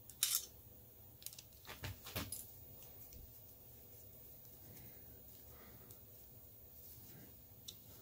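A few light metallic clicks and taps in the first two seconds or so, from a hex key and a steel end mill holder being handled as the holder's set screw is worked on the shank of a spring-loaded tap center; after that only faint room tone.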